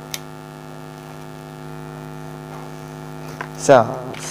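Steady electrical mains hum, a low buzz with many even overtones, with one faint click just after the start. A voice cuts in briefly near the end.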